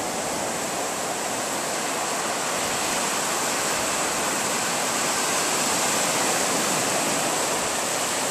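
Ocean surf breaking and washing up a sandy beach: a steady hiss of waves and foam with no separate crashes standing out.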